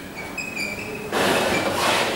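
Chalk writing on a blackboard: a few short, high squeaks in the first second, then about a second of louder scratching strokes.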